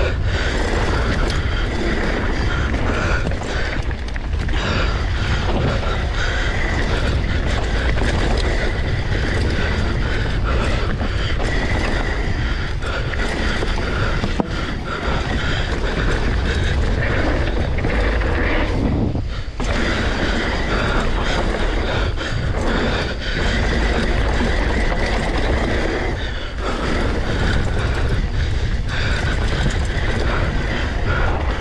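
Mountain bike descending a loose dirt trail at race speed, heard from a camera on the bike or rider: continuous rushing wind on the microphone mixed with tyre roar on the dirt and the rattle of chain and frame over rough ground, with a couple of brief lulls about two-thirds of the way through.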